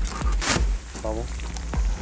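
A cardboard shipping box being opened by hand, the flaps and packing handled with a few sharp crackles, the strongest about a quarter of the way in, over background music.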